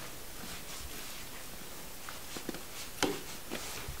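Faint scraping and a few small clicks from a filleting knife making small cuts along a cod's belly cavity on a wooden board, over a low steady hiss; the sharpest click comes about three seconds in.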